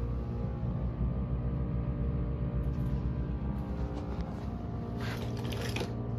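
GE PTAC through-wall air conditioner running just after start-up, a steady hum. A few brief scraping noises come near the end.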